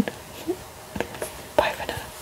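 Faint whispering from a woman, with a couple of small sharp clicks about a second in and a short breathy sound near the end.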